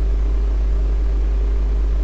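A steady low hum with nothing else over it.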